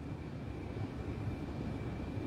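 Room tone: a low, steady rumble with a faint high-pitched whine running through it.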